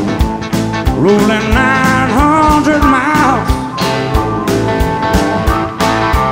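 Live blues-rock band in an instrumental break: an electric guitar lead with bent notes, loudest in the middle, over steady drums and bass.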